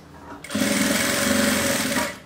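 Electric sewing machine stitching a seam through fabric, running steadily with a fast, even needle rhythm. It starts about half a second in, after a brief pause.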